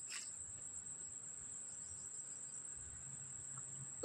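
Insects, crickets by their sound, trilling as one steady, unbroken high-pitched note.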